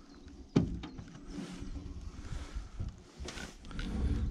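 A fishing gill net being hauled by hand into a small metal boat: a sharp knock about half a second in, then quieter rustling and handling noise of the net lines.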